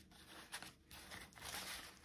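Faint rustling of a paper card envelope being handled and fitted into a handheld paper punch.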